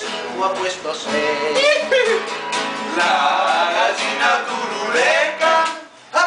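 Acoustic guitar strummed with men singing along loudly, their voices sliding in pitch. The sound drops away briefly just before the end.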